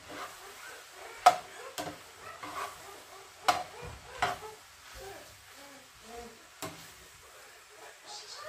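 Spatula stirring ground beef and tomato sauce in a nonstick frying pan, scraping through the meat with about five sharp knocks against the pan.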